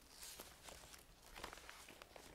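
Near silence in a meeting room, with faint footsteps and a few small clicks.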